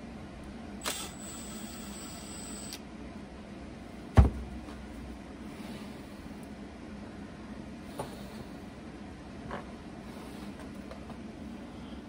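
Workbench handling sounds. A brief high whine comes about a second in. About four seconds in there is a single loud thump, a cordless drill being set down on the bench, and a few light clicks follow.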